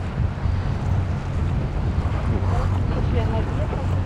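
Wind blowing on the microphone aboard a boat on choppy open sea: a steady low rumble with the wash of the sea. Faint voices come through in the middle.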